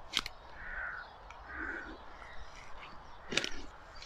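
Crows cawing, two harsh calls about a second apart. There are also two sharp clicks, one just after the start and a louder one near the end.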